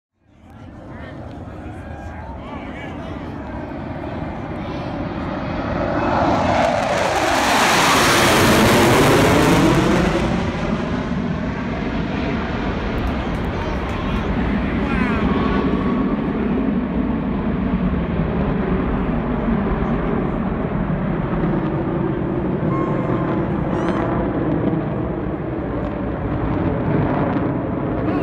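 Blue Angels F/A-18 Hornet jets passing overhead. The jet roar builds over the first several seconds and peaks about eight to ten seconds in with a falling pitch as they go by, then goes on as a steady jet rumble.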